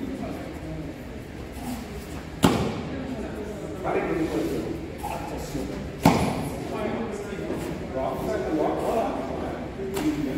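Two sharp cracks of a karate gi snapping as techniques are thrown, about two and a half and six seconds in, ringing briefly in a large hall. Men's voices talk between them.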